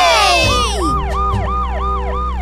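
Cartoon ambulance siren sound effect: a fast warbling tone that rises and falls about five times a second, over background music. A group cheer of "Yeah!" falls away in the first second.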